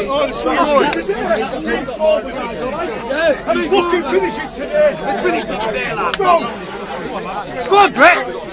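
Many men's voices talking and calling out over one another, a babble of spectators and cornermen with no clear words, with a couple of sharp clicks late on.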